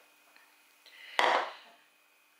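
A bowl set down on a countertop: one clunk a little over a second in, dying away within half a second.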